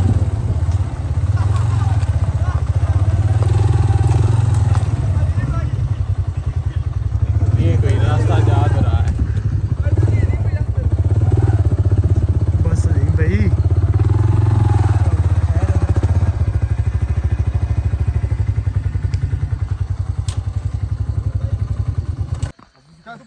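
Motorcycle engine running steadily at low speed while the bike rides slowly over a rough dirt track.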